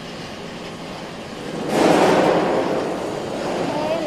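Steady factory machinery noise from a roll forming line running on test, with a louder rushing noise that swells about two seconds in and fades over a second or so.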